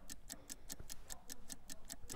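Rapid, even clock ticking at about seven ticks a second, faint: a countdown-clock sound effect running while the on-screen counter falls.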